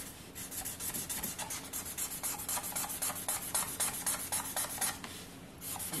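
Marker tip hatching back and forth on paper, a quick rubbing scratch at several strokes a second that stops about five seconds in.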